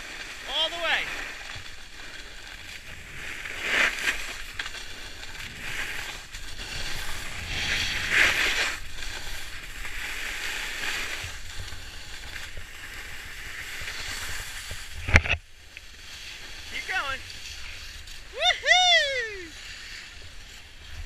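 Skis sliding over packed snow, a steady hiss with louder scraping swishes about 4 and 8 seconds in and a sharp knock near 15 seconds. Short high-pitched voice calls come near the start and near the end.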